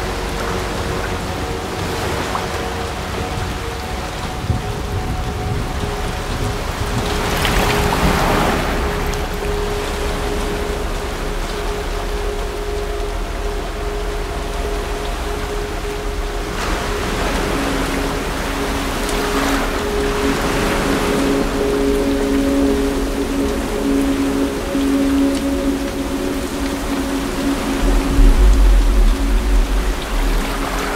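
Heavy rain pouring steadily, swelling louder a few times, under sustained held notes of a music score. A deep low rumble comes in near the end.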